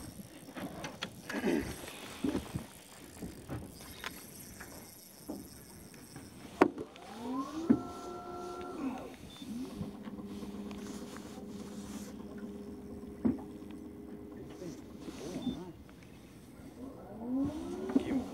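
Bow-mounted electric trolling motor: its whine rises in pitch as it spins up and then holds as a steady hum for several seconds, twice, with a few sharp clicks.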